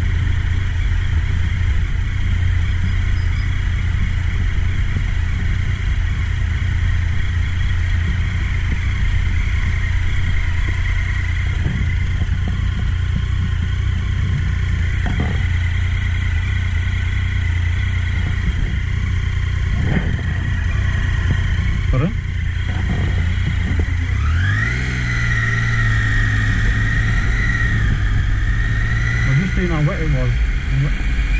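Triumph adventure motorcycle's three-cylinder engine running steadily at low speed, with a few short knocks in the middle. About 24 seconds in, the engine pitch rises as it accelerates, then holds at the higher note.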